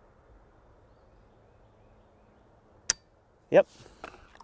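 A single sharp metallic click, about three seconds in, from a KIDD Supergrade 10/22 rifle's trigger dropping the hammer on an empty chamber: the rifle is out of ammunition.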